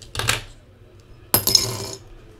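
Two short clatters of hard objects being handled, the second louder and longer.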